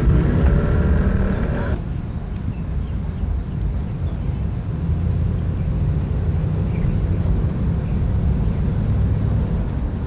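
Steady low rumble of a moving car's engine and road noise, heard from inside the car. In the first couple of seconds faint voices ride over it, then they cut off abruptly.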